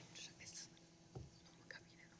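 Faint whispering picked up off-mic by a conference table microphone, with a soft low thump about a second in.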